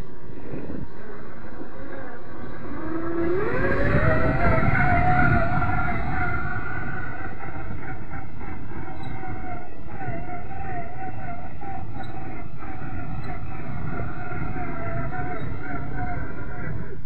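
Electric drive motor and gear train of a GMade R1 RC rock buggy (540 27-turn motor) whining. The whine rises in pitch about three seconds in as the buggy speeds up, then holds a fairly steady pitch with small wobbles.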